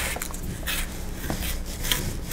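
A fine-toothed plastic comb raked through cotton macramé cord ends to fray them: several short brushing strokes, about one every half second.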